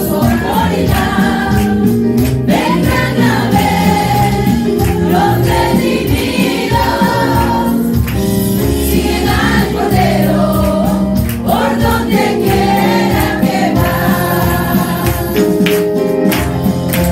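A small group of women singing a gospel hymn together through microphones, with instrumental backing underneath.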